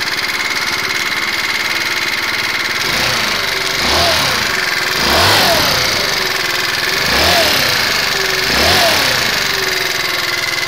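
2012 GMW Jet Classic 49cc four-stroke scooter engine, fitted with a 50 mm big bore kit, idling and then blipped several times from about three seconds in, each rev rising and falling back to idle. It runs with a ticking noise that the owner suspects comes from valves not adjusted right.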